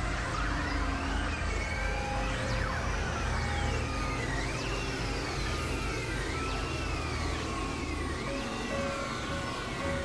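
Experimental electronic noise music: a synthesizer tone swoops up and down in pitch about once a second, siren-like, over a dense low drone and scattered held tones.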